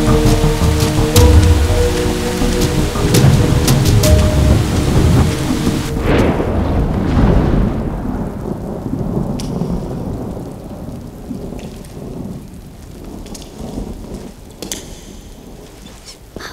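Heavy rain with music playing over it, then about six seconds in a sudden thunderclap that rolls and dies away over several seconds, leaving only faint rain and a few light ticks.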